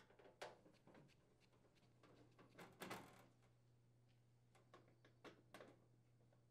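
Near silence with a few faint clicks and scrapes: a hand screwdriver working the screws out of a microwave oven's sheet-metal side panel. A faint steady low hum lies underneath.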